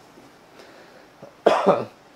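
A man coughs once, a short cough in two quick bursts, about one and a half seconds in, over a faint steady background hiss.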